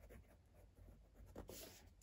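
Faint scratching of a fineliner pen writing on notebook paper, a few short handwritten words, a little louder about a second and a half in.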